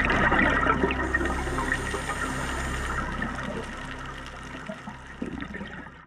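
Rushing, gurgling scuba exhaust bubbles recorded underwater, fading gradually toward the end.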